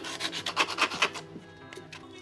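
Hand sanding of a surfboard's damaged tail with sandpaper on a block: quick back-and-forth rasping strokes, about six a second, that die away after a little over a second.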